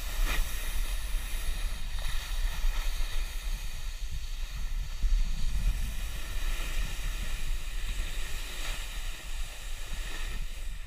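Wind buffeting the microphone of a camera moving downhill, a fluttering rumble, over a steady hiss of riding across packed snow.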